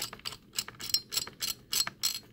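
Precision screwdriver turning a spring-loaded heatsink screw by hand, with a quick, uneven run of light metallic clicks and ticks as the screw is driven home.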